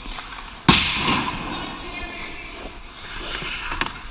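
One sharp crack of a hard hit on the ice, such as a puck or stick striking the boards, comes about a second in and rings out in the rink. Skate blades scrape on the ice around it, with a few lighter clicks near the end.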